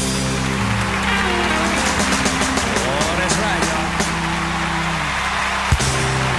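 Live country band holding a sustained chord with crowd cheering over it, closed by one sharp drum hit near the end.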